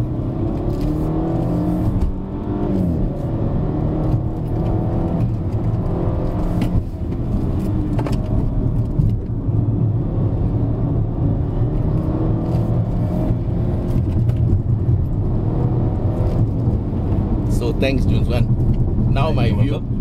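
BMW F30 330i's turbocharged four-cylinder engine heard from inside the cabin under hard driving, its note rising and falling in pitch, with brief drops in level about two and seven seconds in.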